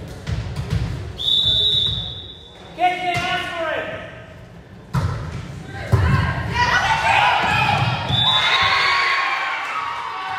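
Referee's whistle blowing once about a second in, then a volleyball struck with sharp slaps near three, five and six seconds in, with players and spectators shouting through the rally. A short second whistle near eight seconds in ends the point.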